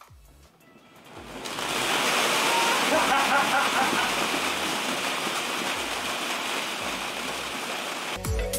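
A cascade of plastic ball-pit balls pouring out of the Tesla Model X's open falcon-wing door onto the floor. It is a steady rattling clatter that swells in about a second and a half in and keeps going.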